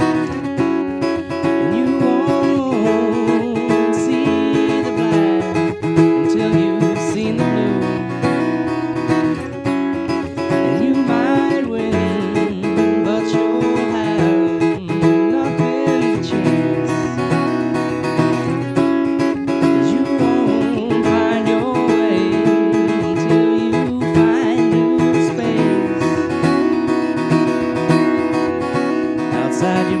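Acoustic guitar strummed steadily through a chord progression, with a man's voice singing over it at times.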